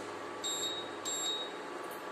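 Two short electronic beeps from an induction cooktop's control panel, about half a second apart, over a steady hiss.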